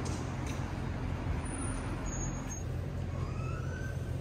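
Steady low rumble of distant city traffic and background noise.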